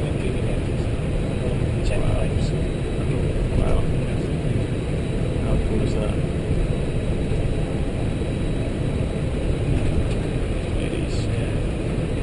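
Steady low rumble in the cockpit of an Airbus A320 taxiing on the ground, with a faint thin high tone running through it.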